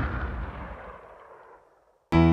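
The long, deep reverberating tail of a loud metallic clang and boom, dying away steadily until it fades out shortly before the end.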